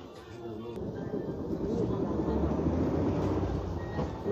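Hyundai New Super Aerocity city bus engine getting louder as the bus pulls away and accelerates through a turn, heard from the front of the cabin, with a deepening rumble and road noise.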